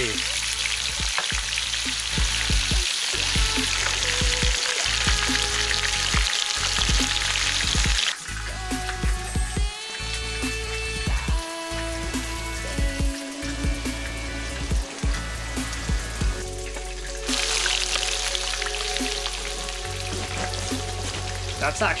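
Burbot pieces frying in oil in a pan on a portable stove, a steady sizzle. About eight seconds in, the sizzle drops back and background music with held notes plays until the sizzle returns loud near the end.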